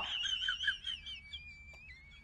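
Small birds singing: thin, high whistled notes and short chirps. A wavering note gives way after about a second to long, steady held whistles.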